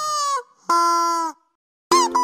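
Two held, buzzy notes, a higher one then a lower one, each about half a second long, then a short silence before plucked-string music starts near the end.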